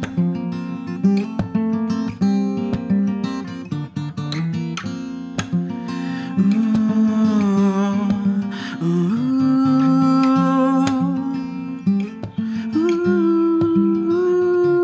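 Steel-string acoustic guitar fingerpicked in quick single notes. About halfway through, a man's wordless singing comes in over it with long held, wavering notes, stepping up in pitch twice.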